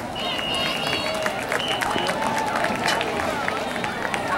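Crowd chatter and scattered voices in the stands of an open-air football stadium, with a high steady tone held for about a second and a half near the start.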